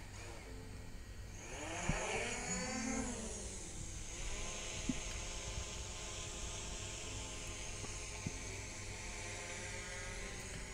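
DJI Mavic Pro quadcopter's motors and propellers spinning up for takeoff: a whine that rises in pitch about a second in, falls back, and settles into a steady pitch once the drone is airborne.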